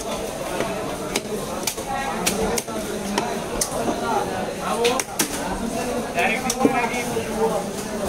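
Heavy steel cleaver chopping through rohu fish on a wooden log chopping block: a string of sharp knocks at irregular intervals.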